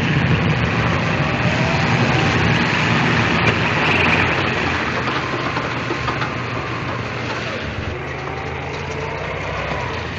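Biplane's piston engine running as the plane taxis in. It is loudest at first and slowly dies down.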